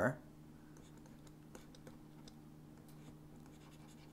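Faint light scratches and ticks of a stylus writing on a tablet screen, over a steady low hum.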